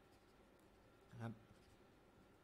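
Near silence: room tone with a few faint pen ticks, broken by one short spoken word about a second in.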